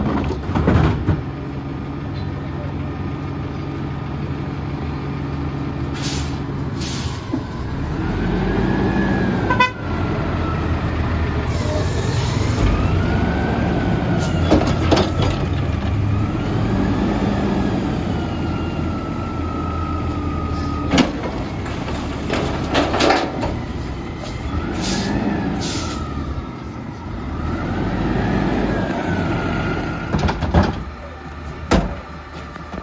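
CNG-powered Mack LEU garbage truck running and revving as its hydraulics lift a McNeilus Pacific carry can over the cab to dump it into the hopper. A whine rises and falls over and over, with several sharp metal bangs.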